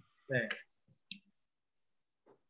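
A short spoken syllable, then a single sharp click about a second in.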